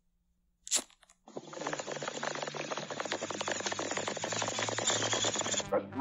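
A single sharp click, then a dense, even crackling hiss that starts about a second later, runs for about four seconds over a faint low hum, and cuts off abruptly.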